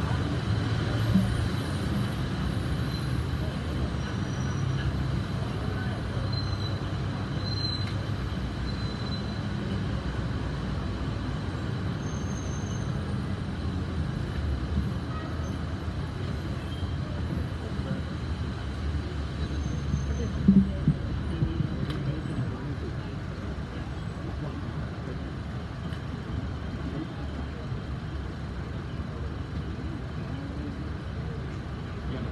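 Low, indistinct murmur of voices over steady room noise in a hall, with a few short knocks about twenty seconds in.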